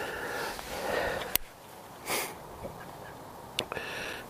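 A person's short sniff about two seconds in, with a sharp click before it and another faint click near the end.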